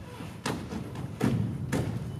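Dancers' feet thumping on a stage floor in a steady rhythm, about two strokes a second, with music underneath.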